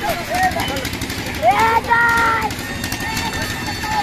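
Young people's voices calling out over steady background noise, with one long, loud held shout about one and a half seconds in.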